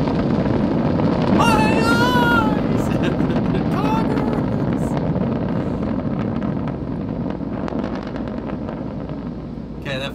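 Falcon 9 first stage's nine Merlin 1D engines during ascent: steady, dense rocket-engine noise carried on the launch broadcast, easing slightly toward the end. A brief voice sound cuts in about a second and a half in.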